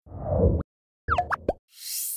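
Animated logo sound effect on a news channel's end card. It opens with a low whoosh about half a second long, then a quick run of three or four pops rising in pitch just after one second, and ends with a high, hiss-like shimmer starting near the end.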